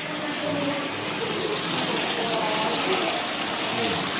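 Water running steadily into a shallow concrete fish pond, a continuous rush with no breaks.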